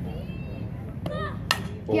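A softball bat hitting a pitched ball: one sharp crack about one and a half seconds in, a solid hit. Spectators' voices are underneath, and a shout breaks out right after.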